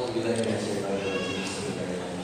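A man's voice over a microphone making a long, drawn-out sound with no clear words, its pitch held and wavering slowly.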